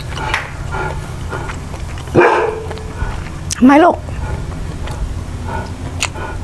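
A dog barking: a short, sharp bark about two seconds in, then a louder, longer bark about three and a half seconds in whose pitch rises and falls with a wavering, howl-like quality.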